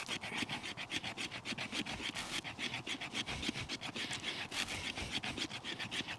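Solognac Sika 100 knife's stainless steel blade scraping fast and repeatedly down a split of maple, about seven strokes a second, raising fine wood fuzz onto birch bark.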